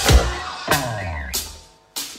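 Live rock band with drum kit hitting accented stop-time stabs, two loud strikes a little over half a second apart, then a weaker one, each ringing out and dying away to near quiet near the end.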